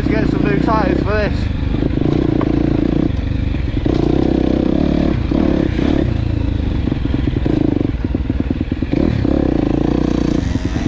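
Enduro dirt bike engine pulling along a tight wooded trail, the throttle opened and shut again and again so the revs keep rising and dropping, with a quick choppy stretch of on-off throttle about two-thirds of the way through.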